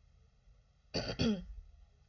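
A woman clearing her throat once, about a second in, lasting about half a second.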